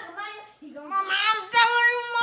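A child singing, with a short break just before halfway and steady held notes near the end.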